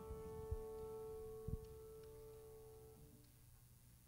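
A piano chord rings and slowly dies away, fading out shortly before the end, with a few soft low knocks under it.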